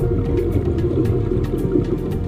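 Underwater bubbling and gurgling, as of a scuba diver's exhaled bubbles rising past the camera, with a low rumble beneath.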